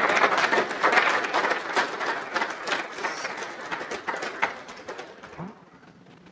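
Audience applauding, the clapping loud at first and fading away over about five seconds.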